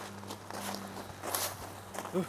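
Several footsteps on a gravel path at a walking pace.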